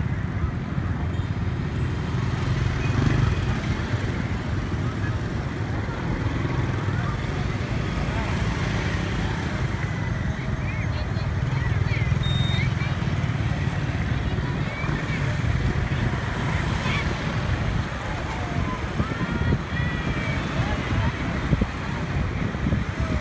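Steady rumble of motorbike traffic heard from among the moving traffic, with indistinct voices of passers-by mixed in.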